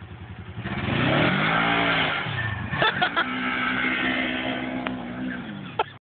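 Polaris RZR XP 900 side-by-side's parallel-twin engine revving hard as it pulls away, rising in pitch then falling within about two seconds, then running at a steadier pitch that drops away near the end. A few sharp clacks come around the three-second mark.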